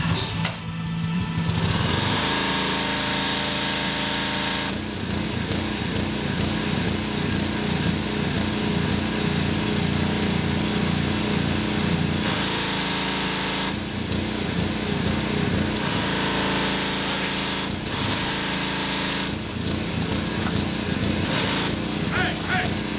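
Small gasoline engine of a pressure washer running steadily, with the hiss of its water spray coming and going every few seconds.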